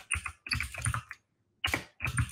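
Typing on a computer keyboard: quick runs of key clicks, broken by a silent pause of about half a second just past the middle.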